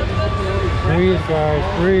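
Mostly speech: a man's voice saying a few short words, ending with "Breathe," over a steady low background hum.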